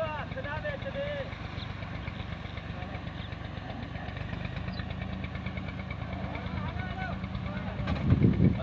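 Tractor-driven wheat thresher running steadily, a continuous low engine and machine drone as it threshes and blows out straw.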